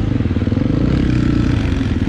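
Dirt bike engine idling steadily with a low, even beat.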